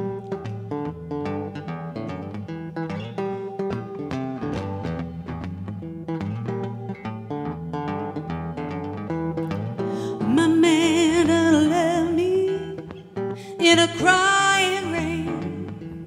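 Archtop guitar playing a picked intro. About ten seconds in, a woman's voice comes in over it, singing long held notes with vibrato, with a brief break between two phrases.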